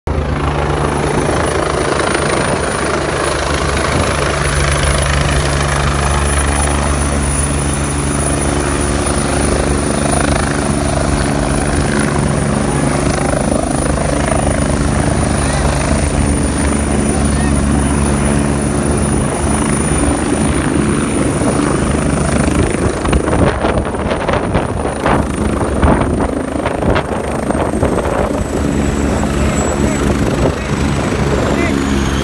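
A helicopter running close by: a loud, steady rotor and engine thrum with a thin high whine. From about three-quarters of the way through the thrum thins, and crowd voices and scattered sharp knocks come through more.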